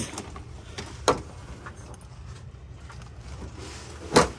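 Items being handled and shifted in a pile of stored things, with one sharp knock about a second in and a fainter click just before it, over a low steady rumble.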